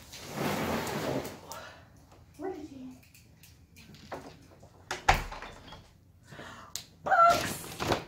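A large cardboard box scraping as it is pushed across the floor, then a wooden front door shut with a single solid thud about five seconds in.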